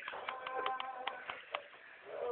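Guitar playing a picked line of single notes, about three or four a second, each note ringing on, with a brief lull near the end.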